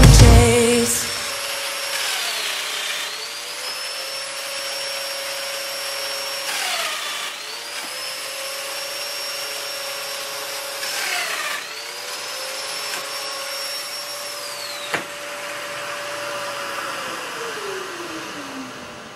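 Festool Domino joiner and its dust extractor running while three mortises are plunge-cut into the edge of a white oak panel; the motor's whine dips in pitch with each of the three cuts. A click comes near the end, and the whine then winds down.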